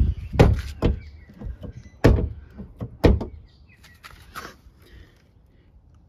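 The tailgate of a 2005 VW Polo 9N hatchback being pushed down repeatedly, thudding four times in the first three seconds and once more lightly, without latching: since new gas struts were fitted it catches and will not close.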